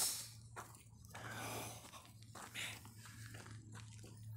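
Faint breathing and sniffing close to the microphone, with light rustles and handling knocks over a steady low hum.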